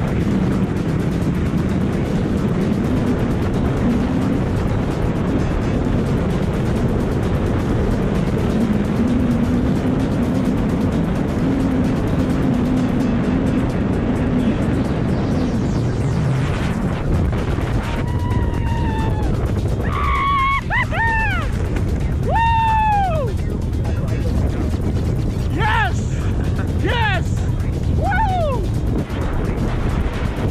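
Loud, steady rush of freefall wind buffeting the camera microphone during a tandem skydive. In the second half, a string of short, high whooping yells sounds over it.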